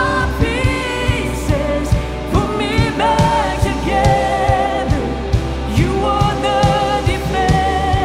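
Live worship band playing: a woman sings the lead melody, with vibrato on held notes, over electric guitar, keyboard and a steady drum beat.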